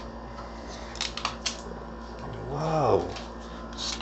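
Fingernail picking at the corner of the protective plastic film on a tempered-glass PC case side panel: a few quick clicks and scratches. Then a short hummed 'hmm' in a low man's voice that rises and falls, and a brief crinkle as the film starts to peel near the end.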